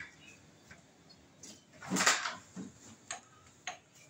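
A door being opened: a short rustling rush about halfway through, then a couple of sharp clicks near the end.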